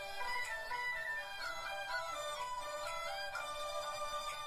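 A recorded folk melody built on a five-note pentatonic scale, a single melody line that moves by steps and slides into some of its notes.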